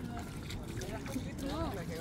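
Faint, indistinct voices speaking briefly over a steady low outdoor background noise.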